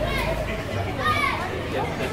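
Several people talking at once in a mixed background of voices, with one higher-pitched voice calling out about a second in.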